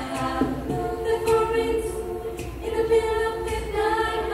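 Choir of young women singing a cappella, several voice parts holding sustained chords that shift to new notes every second or so.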